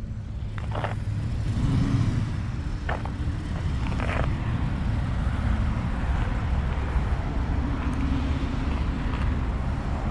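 Steady low rumble of a motor vehicle running nearby, with a few faint clicks about one, three and four seconds in.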